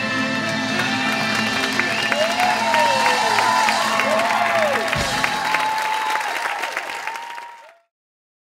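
Audience applauding and cheering, with rising-and-falling whoops, while the band's final chord rings out underneath. The sound fades out near the end.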